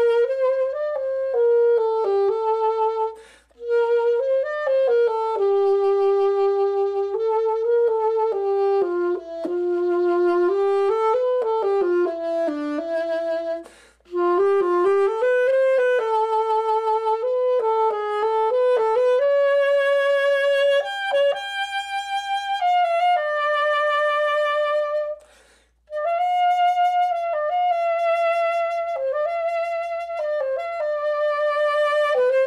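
Solo saxophone playing a slow, legato melody of long held notes with vibrato. The phrases break for short breaths about three and a half, fourteen and twenty-five seconds in.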